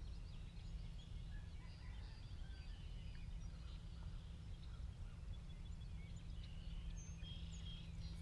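Birds chirping and trilling over a steady low rumble.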